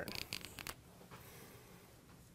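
Dry-erase marker being handled and uncapped, a few short rasping scrapes in the first moment, then faint room tone.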